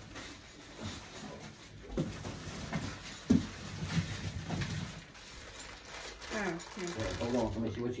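Indistinct talking in a small room, clearest in the last couple of seconds, with a sharp knock a little over three seconds in and a few softer thumps before it.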